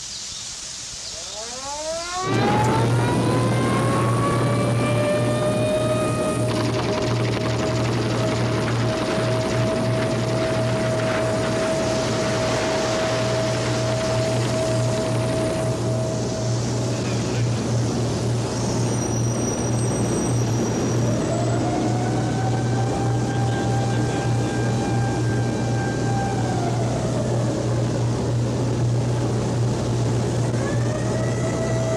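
Industrial plant machinery: a whine rises in pitch about two seconds in, then holds as a steady high tone over a heavy low hum. Later the tone shifts up and back down.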